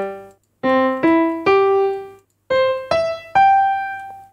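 BandLab's Grand Piano virtual instrument, played from a computer keyboard: a rising three-note broken chord, then the same three notes an octave higher after the octave is shifted up. The last note rings out and fades near the end.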